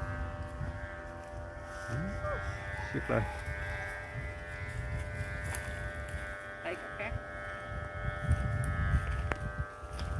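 Steady drone of several overlapping tones from kite flutes (sáo diều) humming in the wind, with wind rumbling on the microphone that grows louder near the end.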